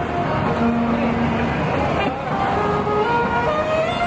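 Saxophone played on the street, a slow melody of held notes stepping from one pitch to the next, over steady city traffic and crowd noise.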